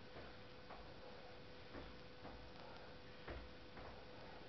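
Faint soft taps of sneakers on a rug-covered floor as a person steps and bounces through a footwork drill, irregular, about two a second, the strongest a little past three seconds in, over a faint steady hum.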